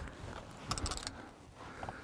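Short run of rattling clicks about three-quarters of a second in, with a couple of faint clicks near the end, as a landing net holding a walleye is brought aboard and set down on the boat deck.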